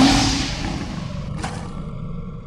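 Logo-sting sound effect: a sudden loud hit that fades away over the next two seconds, with a short sharp swish about one and a half seconds in.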